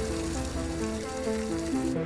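Soft background music of slow, sustained notes over a steady hiss of water spraying from a drinking fountain at high pressure.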